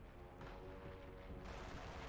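Faint video-slot game audio for the Pearl Harbor slot's dogfight feature: a low, steady droning tone with a rumble beneath it.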